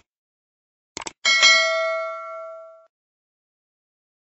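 Subscribe-button animation sound effect: a quick click, then a bright bell ding that rings out and fades over about a second and a half.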